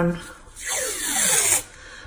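Masking tape being pulled off the roll: a rasping screech lasting about a second, falling in pitch.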